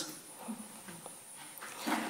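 A pause in speech: low room tone with a thin, faint high-pitched whine and a few faint, brief sounds, slightly louder near the end.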